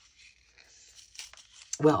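Faint rustling of a small paper card being handled, with a few light clicks about a second in. A woman's voice starts near the end.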